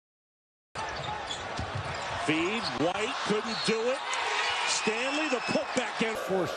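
Digital silence for just under a second, then arena game sound: a basketball bouncing on a hardwood court amid steady crowd noise, with a man's voice.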